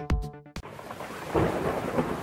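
An electronic music beat stops about half a second in, and heavy rain takes over, pouring off a roof, with a low rumble of thunder under it that grows louder about a second later.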